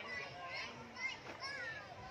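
Children's high-pitched voices chattering and calling, with no clear words.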